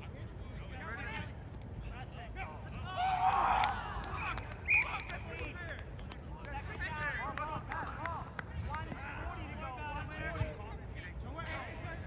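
Several players and onlookers shouting and calling out across an open field during a flag football play, with a louder burst of shouting about three to four seconds in and a brief sharp high sound just before five seconds in.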